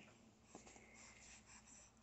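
Near silence: room tone with a few faint clicks and rustles from about half a second in.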